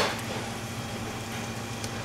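Steady low hum of kitchen equipment, with a brief click right at the start.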